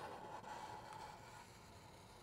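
Faint rubbing of a felt-tip marker drawing across paper, fading out about a second and a half in.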